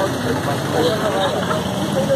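Background voices of people talking over a steady hum of street and vehicle noise.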